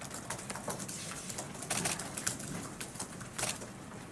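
Scattered, irregular clicks and taps over a faint room hum, with a couple of louder clicks about two and three and a half seconds in.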